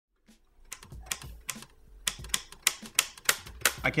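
Typewriter keys being struck, a run of sharp, uneven clacks about three a second.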